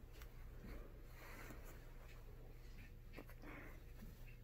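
Near silence: faint soft rustling of faux fur as a fursuit head is pulled on and adjusted, over a low steady room hum.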